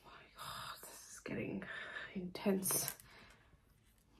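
Quiet, partly whispered speech in a few short phrases, with nearly no sound in the last second.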